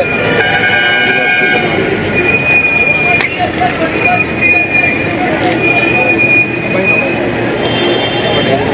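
Train wheels squealing in drawn-out high steady tones that recur several times, over the steady chatter of a crowd.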